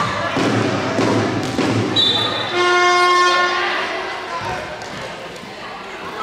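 Voices shouting and echoing in an indoor sports hall, then a horn sounding one steady, loud note for about a second, a little before the middle. A short high tone comes just before the horn.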